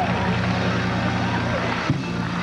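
Gospel praise-break music holding a sustained low chord, with voices calling out over it in rising and falling glides. A sharp click comes near the end.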